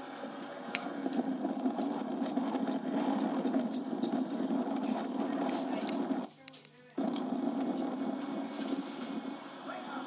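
Indistinct voices, as muffled television sound picked up off the set's speaker, with a sudden drop to near quiet for about a second around six seconds in.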